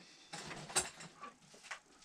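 Faint handling noise of small objects being moved: light rustling with a sharper click about three-quarters of a second in and a couple of small ticks after.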